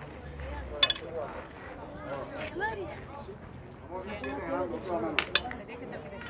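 Steel pétanque boules clinking against each other: one sharp clink about a second in and two quick clinks near the end, over faint voices in the background.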